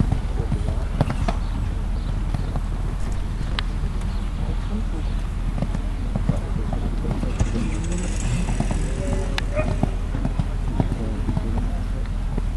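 Hoofbeats of a horse cantering on sand footing, a run of short dull thuds over a steady low rumble, with indistinct voices in the background.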